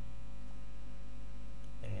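Steady low electrical mains hum picked up on the recording, running evenly under a pause in the narration.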